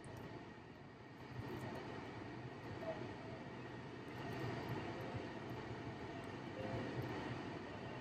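Faint, steady rumble and hiss of a vehicle, growing a little louder about a second and a half in.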